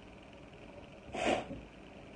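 One short, sharp sneeze about a second in.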